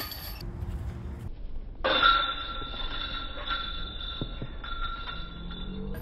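A steady, high-pitched squeal holding two pitches, starting abruptly about two seconds in and lasting about four seconds.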